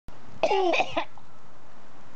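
A person coughing and spluttering briefly about half a second in, after a bug has gone into their mouth, over a steady background hiss.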